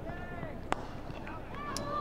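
A cricket bat striking the ball: a single sharp crack about three-quarters of a second in, over quiet ground ambience.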